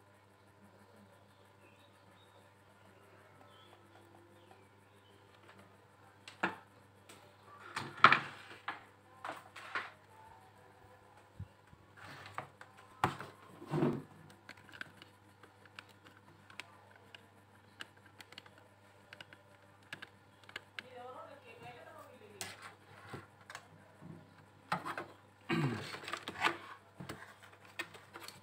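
Scattered clicks and knocks of multimeter probes and a hinged plastic analog-multimeter case being handled on a workbench, loudest about 8 seconds in and again around 13 to 14 seconds. A low steady hum runs underneath, and the first several seconds hold only that hum.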